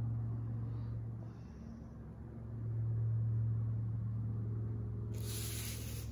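A steady low hum that fades for about a second and comes back, with a short rustle of a paper brochure page being turned near the end.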